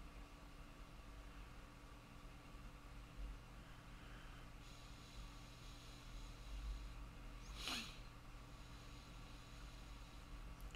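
Faint steady room hum, with one short breath through the nose about three-quarters of the way through.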